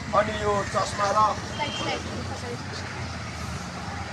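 A voice speaks for about the first second, then a steady low engine rumble of a vehicle running nearby carries on alone.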